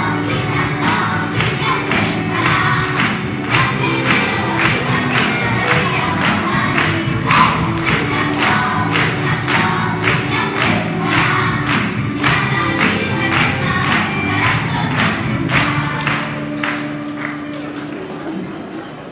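Young children's choir singing a Christmas carol together over instrumental accompaniment with a steady beat, fading down near the end.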